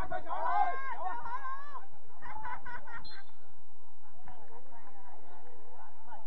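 Voices calling out around a soccer pitch during play, loudest in the first two seconds and again about two and a half seconds in.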